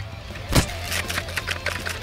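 A skier crashing into snow, heard on a body-worn action camera: one heavy thud about half a second in, then a quick run of crunches and knocks as body and skis tumble through the snow.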